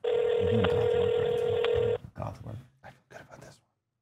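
Telephone ringback tone of an outgoing call played over a speaker: one steady ring about two seconds long, the call not yet answered. A few faint voice sounds follow.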